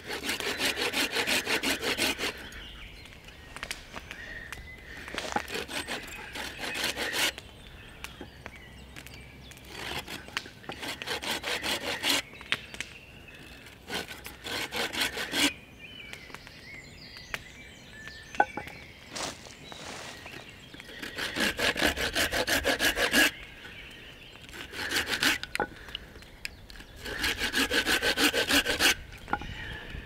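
Bahco Laplander folding saw cutting a stop cut into a sweet chestnut log, with teeth that cut on both the push and the pull stroke. It goes in six short bouts of quick strokes, each a couple of seconds long, with pauses between them.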